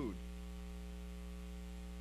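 Steady electrical mains hum: a low drone with a ladder of evenly spaced, unchanging higher tones above it.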